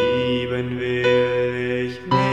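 Slow instrumental darkwave music: a few piano notes ringing out over a held low drone, with no singing.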